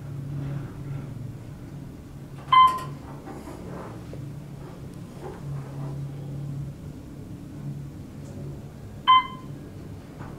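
An Otis hydraulic elevator car descending with a steady low hum. The car's floor chime dings twice, single clear dings about two and a half seconds in and again near the end as the car reaches the lobby.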